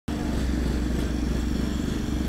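Portable generator engine running at a steady speed, a continuous low hum.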